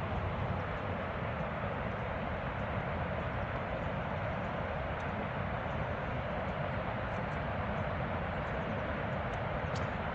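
Steady roar of rushing water pouring down a dam spillway, an even, unbroken rush of noise.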